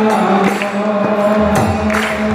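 Kirtan: a devotional mantra sung on long held notes over harmonium, with a few sharp percussion strokes.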